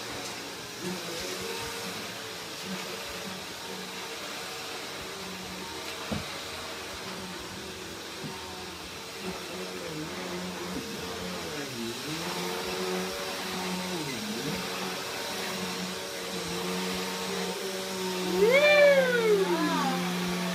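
A household appliance motor running with a steady hum, its pitch dipping briefly twice. Near the end a voice rises and falls in one loud call.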